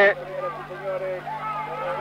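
Faint voices in the distance between bursts of commentary, over a steady low electrical hum.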